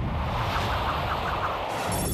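Rushing, rumbling sound effect for an animated map graphic. A high, ringing tone begins just before the end.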